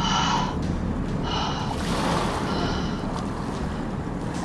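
A woman's heavy gasping breaths, three of them about a second apart, over a steady rushing-water sound effect: acted breathing for someone who has just come up from under a fast torrent.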